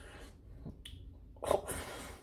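Mouth sounds of a person chewing and tasting a crunchy flour-coated peanut: a short sharp click a little under a second in, then a louder smack about one and a half seconds in.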